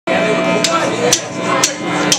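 Drumsticks clicked together in a count-in, three sharp clicks half a second apart, over a sustained electric guitar chord ringing through the amp.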